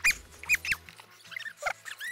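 A run of short, high-pitched squeaky glides, about six in two seconds, each rising and falling in pitch, over quiet background music.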